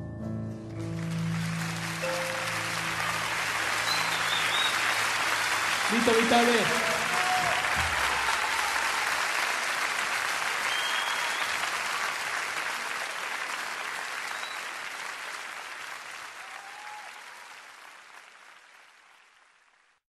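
Audience applauding and cheering, with a shout about six seconds in; the applause swells, then fades out slowly to silence. The last held notes of a song ring under it for the first few seconds.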